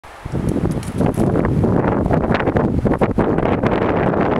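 Wind buffeting the microphone outdoors: a loud, uneven rumble.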